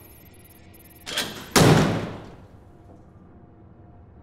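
Door sound effect: a short sound about a second in as the door is opened, then a louder one that fades away over about half a second.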